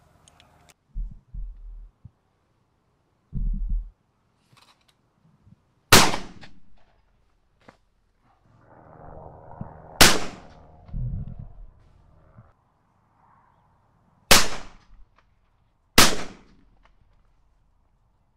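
Four shotgun shots at wood pigeons coming in over decoys: one about six seconds in, one about four seconds later, then two more a second and a half apart near the end. Dull low thumps come between them.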